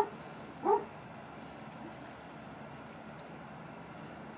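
Black Labrador whimpering twice in its sleep: two short whines well under a second apart, followed by a faint steady room hiss.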